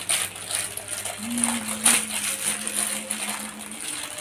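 Thin clear plastic bags crinkling and crackling as silicone pop-it fidget toys are pulled out of their packaging, with a few sharper crackles.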